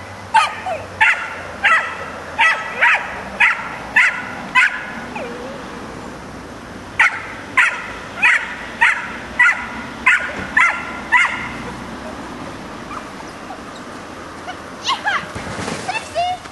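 A dog barking in two runs of about eight high barks each, roughly one and a half barks a second, with a pause of a couple of seconds between the runs; a few fainter calls come near the end.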